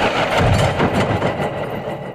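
The closing seconds of a psytrance track: with the beat gone, a dense, rumbling, engine-like electronic noise texture fades out.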